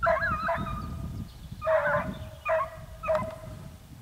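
Hunting hounds baying on a hare's scent trail, about five drawn-out bays over the few seconds, with a steady ringing pitch.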